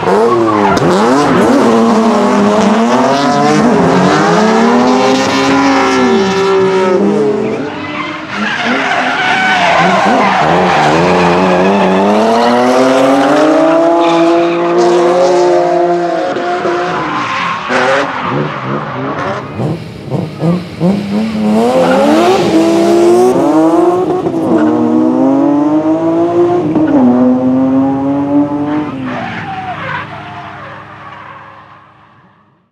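Drift cars' engines revving up and down again and again as they slide through corners, with tyre squeal and a haze of tyre noise.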